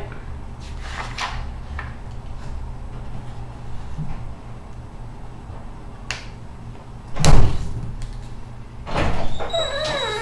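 Sheet of paper being handled, folded in half and creased on a tabletop: soft rustles and scrapes of paper and hands on the table. A brief loud scrape about seven seconds in is the loudest sound, with another shorter one about nine seconds in.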